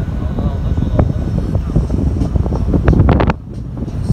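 Wind buffeting a phone microphone held at an open window of a moving car, with the car's road noise underneath; the rumble drops off sharply about three seconds in.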